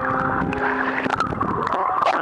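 Churning water and bubbles heard through an underwater camera housing: a steady rushing noise with a few faint clicks.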